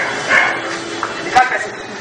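Dog barking and yelping in short, repeated calls, the sharpest about one and a half seconds in.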